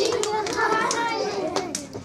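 Young children's voices in a classroom, several chattering and calling out over one another in high voices, with a few sharp taps mixed in.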